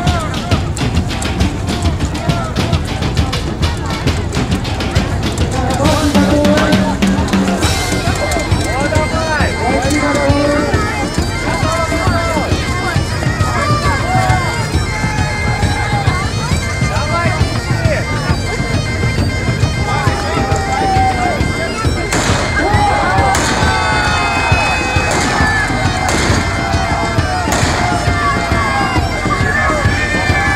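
Bagpipes playing, with the voices of a crowd underneath. A steady high drone enters about eight seconds in, and a few sharp knocks sound late on.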